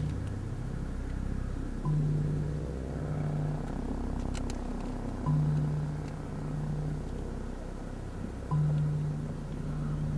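Background music: a low bass figure, a note held about a second and a half and repeated about every three seconds, each entry marked by a light click, over a steady low rumble.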